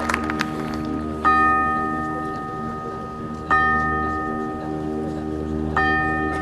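Three struck bell tones, a bit over two seconds apart, each ringing on and fading, over a quiet held chord from the marching band's front ensemble. The tail of crowd applause dies away at the very start.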